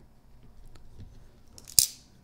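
Faint handling sounds of a folding knife being picked up off a desk mat, with one short, sharp click near the end.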